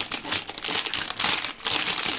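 Thin plastic bread bag crinkling and rustling in irregular bursts as soft pav buns are pulled out of it by hand.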